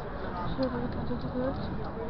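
A voice, words not made out, over the steady rumble and rattle of a bicycle riding on cobblestones.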